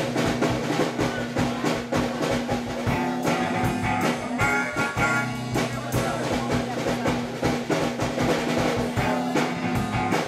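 A live blues band playing an instrumental passage: a drum kit keeps a steady beat under guitar, with a harmonica played cupped against a hand-held microphone.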